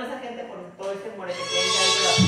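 A person's voice making high, wavering sounds. Louder music comes in about a second and a half in.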